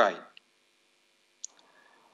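A man's voice trailing off at the start, then a pause of near silence broken by two faint clicks, the sharper one about one and a half seconds in.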